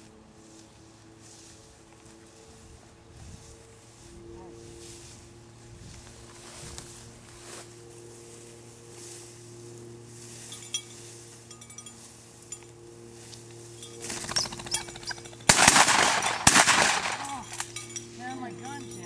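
Two shotgun shots about a second apart at a flushed game bird, both of them misses. Before them, footsteps swish through tall grass.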